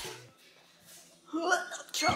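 A backing pop track cuts off at the start, followed by about a second of near silence. Then a woman makes one short voiced sound, not a word, about a second and a half in.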